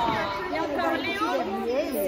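Several children talking at once, their voices overlapping in a steady chatter.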